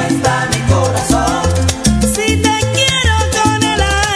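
Salsa romántica music playing, with a steady dance rhythm of bass and percussion under a melodic line.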